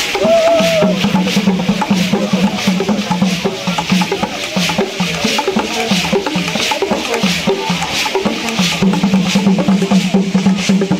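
Traditional Bamiléké Kougang dance music: drums and struck wooden percussion with rattles playing a fast, dense rhythm over a low held tone that breaks in a regular pattern. A short warbling high note sounds in the first second.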